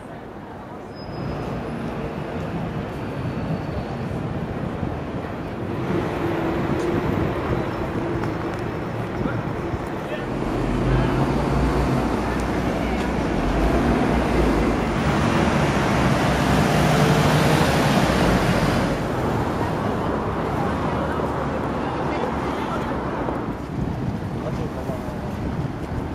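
Busy city street ambience: road traffic running past, with a heavier low rumble for several seconds in the middle, mixed with wind on the microphone and the voices of passers-by.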